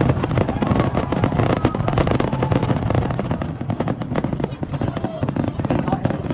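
Fireworks display: a dense, continuous run of sharp bangs and crackles, with a crowd's voices underneath.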